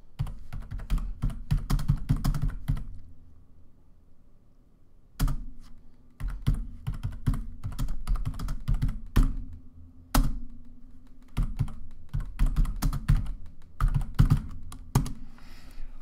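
Typing on a computer keyboard: quick runs of keystrokes, a pause of about two seconds after the first run, then more bursts of typing with a few harder single key strikes.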